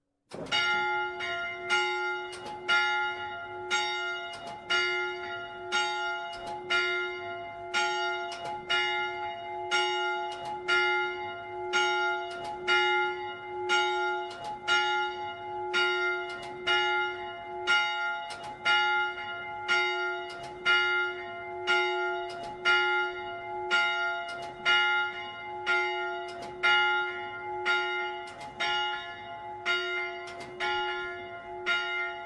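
The Szent József bell, a 100 kg bronze church bell tuned to F, cast by Frigyes Seltenhofer in Sopron in 1920, is swung by an electric motor and rings. Its clapper starts striking suddenly about half a second in, then strikes about once a second, each stroke ringing on into the next.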